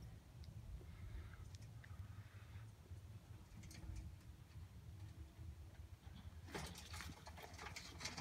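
Faint outdoor background with a low rumble and a few scattered faint clicks, then a denser burst of crackling, rustling clicks about six and a half seconds in.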